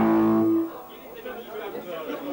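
An amplified electric guitar note or chord rings on steadily and is cut off about half a second in, leaving low chatter from the crowd.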